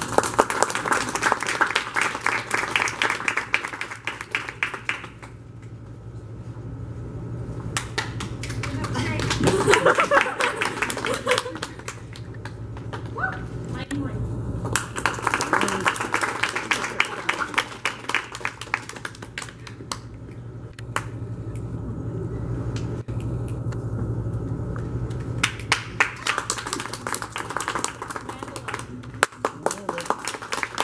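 Audience clapping in four bursts of several seconds each, with quieter gaps between them and crowd voices mixed in.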